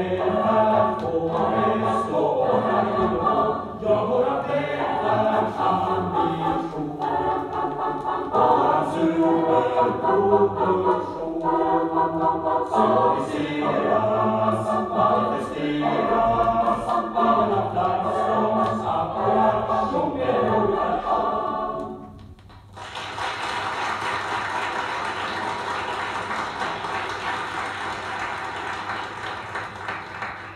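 A choir singing a Swedish song, many voices together in harmony. About 22 seconds in the singing stops and gives way to a steady, even noise that fades near the end.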